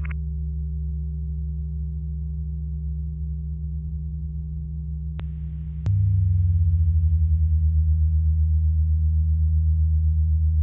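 Droning music of steady low sustained tones. About six seconds in a click comes, and a louder, deeper low tone enters and holds.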